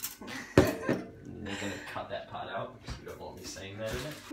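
Indistinct talking and laughter between two people, with one sharp knock about half a second in.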